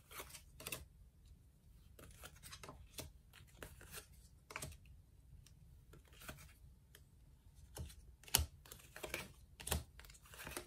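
Tarot cards being handled and dealt from the deck onto a table: faint, irregular light clicks and taps of card stock, with louder snaps of cards set down near the end.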